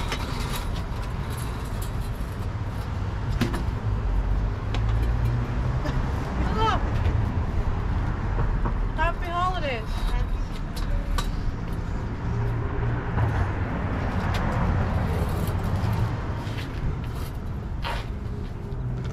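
Street traffic: cars passing with a steady low rumble. A few brief high gliding sounds come about a third of the way in and again near the middle.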